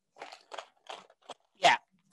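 Hands rummaging through items, with several short, uneven rustles and crinkles.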